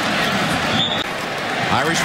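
Stadium crowd noise from a football broadcast, with a short, high, steady whistle just before the end of the first second: a referee's whistle blowing the play dead after the tackle. The sound breaks off at a cut about a second in.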